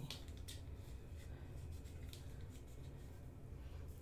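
A few faint clicks and light handling noises from a small dry-shampoo powder canister with a plastic lid being turned over in the hands, over a low steady hum.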